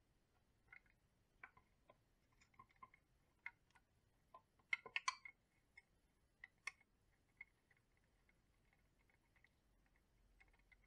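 Faint, scattered small clicks and taps from handling a small LED dimmer controller board and its wires in a plastic project box, then a small screwdriver working its screw terminal. The loudest is a quick cluster of clicks about halfway through.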